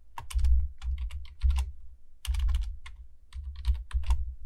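Typing on a computer keyboard: quick clusters of keystrokes with a short break near the middle.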